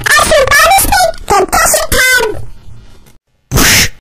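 A high-pitched voice, sliding up and down in pitch in several short phrases for about two seconds, then fading out. After a brief silence comes a short, loud burst of hiss-like noise near the end.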